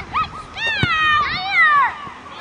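A child's high-pitched shouting on a football pitch: two long wordless calls that rise and fall, the second ending in a falling glide, with a short thud between them.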